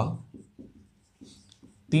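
Marker pen writing on a whiteboard: faint, short scratchy strokes of handwriting.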